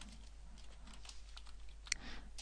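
A few faint computer keyboard key clicks, with one sharper click near the end.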